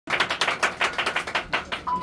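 A fast, slightly uneven run of sharp clicks, about six a second, with a steady high beep starting near the end.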